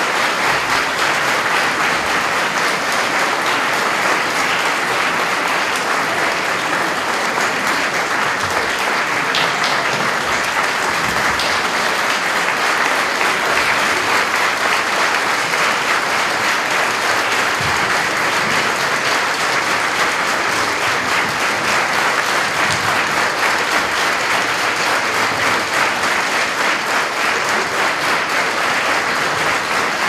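A large audience in a concert hall applauding, a dense, steady clapping that holds at the same level throughout.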